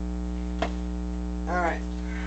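Steady electrical mains hum on the recording. A single sharp click comes just over half a second in, and a brief wavering, voice-like tone follows about a second later.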